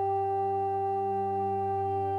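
A steady musical drone: several notes held unchanging over a low bass note, the sustained accompaniment to devotional singing between sung lines.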